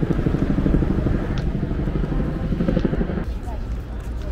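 Busy city outdoor ambience: traffic noise with a steady low rumble, and people talking.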